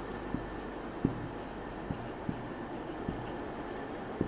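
Marker pen writing on a whiteboard: faint short ticks and scratches of the pen strokes, a few each second, over a steady low room hum.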